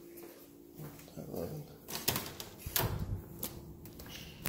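Quiet footsteps on a hard floor with a handful of sharp clicks and knocks, mostly in the second half.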